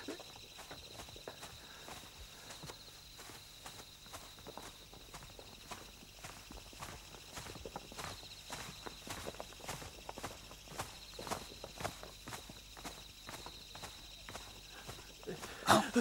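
Footsteps through dry undergrowth: a quiet, irregular run of light crunches, several a second.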